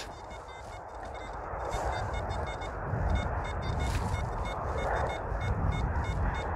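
XP ORX metal detector giving faint short high beeps again and again as its coil sweeps over ploughed soil, under a low rumble that grows louder about halfway through.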